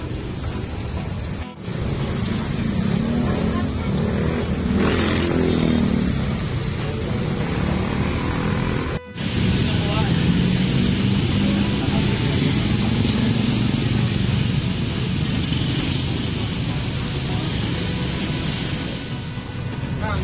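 Road traffic running past, with indistinct voices of people talking close by; a vehicle passes close about five seconds in.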